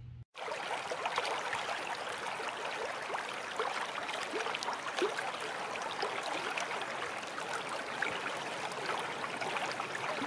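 Running water, a steady trickling and gurgling stream sound full of small splashes and bubbles, starting abruptly after a short silent gap at the start.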